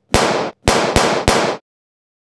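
Four pistol gunshot sound effects: a single bang, then three more in quick succession about a third of a second apart, each sharp with a short ringing tail.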